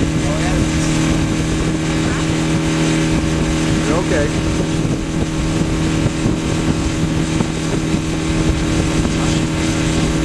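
A 2009 Mercury 60 HP four-stroke outboard motor running steadily at cruising speed, its constant hum heard from on board over the rush of wind and water past the hull.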